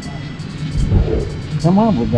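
A low rumble for the first second and a half, then a voice begins near the end, with background music.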